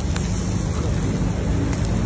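Split fish grilling masgouf-style on wood embers: a steady sizzle and hiss of steam and fat on the coals, over a low steady hum.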